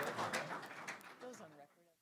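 A few scattered hand claps over murmuring voices in a large room, fading away. A low voice sounds briefly late on, then the sound cuts off just before the end.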